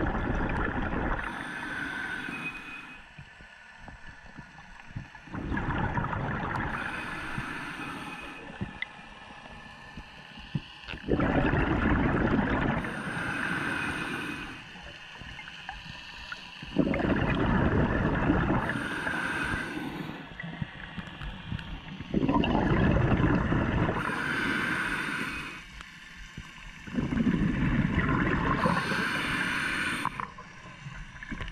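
A scuba diver breathing through a regulator underwater: a regular breathing cycle about every five and a half seconds, each breath a few-second rush of exhaled bubbles with a brief high hiss.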